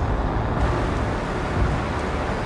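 A car engine running at idle: a steady low rumble.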